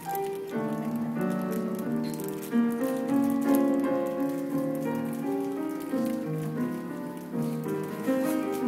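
Piano played solo, a busy flowing run of overlapping notes.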